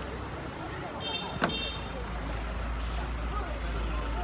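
Outdoor street noise: a steady low rumble with voices in the background, and a brief high-pitched squeal about a second in, cut by a sharp click.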